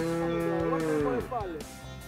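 A cow mooing: one long low call held at a steady pitch that dies away about a second and a quarter in.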